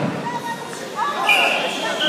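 Voices calling out across a large, echoing sports hall during a karate bout, with a short shrill high tone about a second and a half in.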